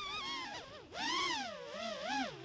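FPV racing quadcopter's brushless motors whining, the pitch swooping up and down with the throttle. It dips low just before the middle, then jumps back up and gets louder.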